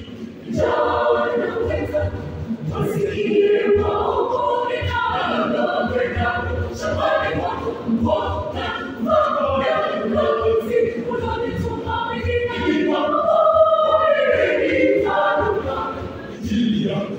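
Mixed youth choir of boys and girls singing together, many voices in one sustained, continuous song.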